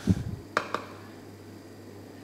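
Cookware being handled on a kitchen counter: a low thump right at the start, then two sharp clicks close together about half a second later.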